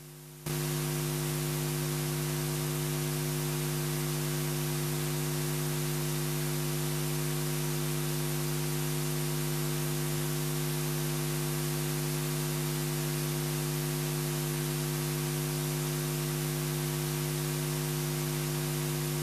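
Steady electrical hum with a layer of hiss from an open audio line, jumping louder about half a second in and then holding unchanged.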